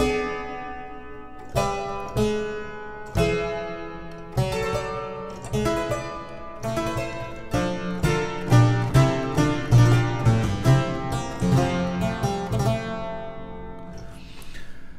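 Harpsichord playing a Baroque-style contrapuntal passage built on falling sequences of 5-6 chords. It starts with separate plucked chords about every second and a half, then from about halfway through moves into quicker, denser notes with a stronger bass line.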